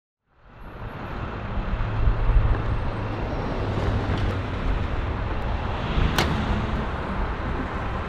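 Steady outdoor traffic and road noise that fades in from silence over the first second or two, with one sharp, short sound about six seconds in.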